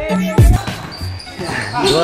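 A basketball being dribbled on a concrete court, two heavy thuds about half a second apart near the start, under background music, with a man's voice near the end.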